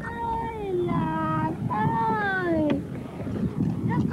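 A woman wailing a lament for her missing husband. There are two long, drawn-out cries, each falling in pitch, over a low background rumble.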